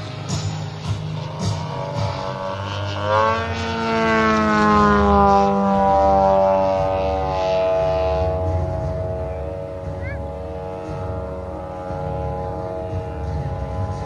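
Engine and propeller of an aerobatic radio-control model plane flying overhead. Its note climbs sharply in pitch about three seconds in, then slowly sinks over the following seconds.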